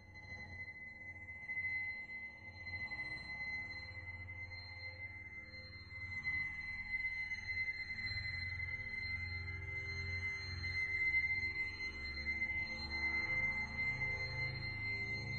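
Electroacoustic music: a steady high ringing tone held over a low drone, with faint tones sweeping up and down between them, growing a little louder in the second half.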